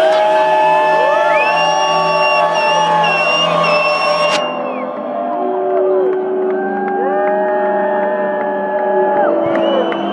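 Electronic dance music played loud over a concert PA, with long held synth notes that slide in pitch as they start and end, and crowd noise and whoops under it. The treble drops out suddenly about halfway through.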